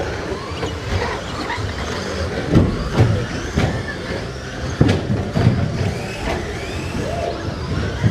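Radio-controlled stock trucks racing on an indoor off-road track: small motors whining up and down in pitch as they speed up and slow down, with several sharp thumps from the trucks landing and hitting the track.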